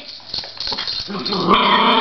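A small Schnorkie (schnauzer–Yorkshire terrier cross) giving a drawn-out whining growl, which gets louder over the last half-second, as the excited dog is made to sit for a treat.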